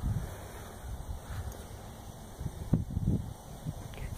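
Wind rumbling on the microphone, with a few soft low thumps about three seconds in.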